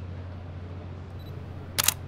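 Camera shutter firing once near the end, two quick sharp snaps close together, over a steady low background hum.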